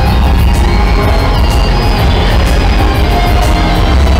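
Loud show music with heavy bass, played over the stunt arena's sound system.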